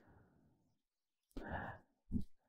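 A person's short breathy exhale, like a sigh, about a second and a half in, against near silence.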